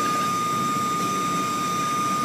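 Car wash machinery running: a steady rushing noise with a constant high whine through it.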